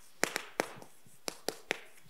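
Chalk striking and tapping against a chalkboard as letters are written: about six sharp clicks spread unevenly over two seconds.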